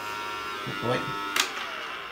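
Small battery-powered motor of a toy Dyson upright vacuum cleaner whirring steadily. About one and a half seconds in there is a sharp click as it is switched off, and the whir dies away.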